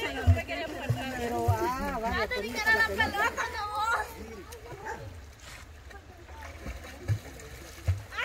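Women's voices talking for about the first four seconds, then a quieter stretch of outdoor ambience with water splashing from the river.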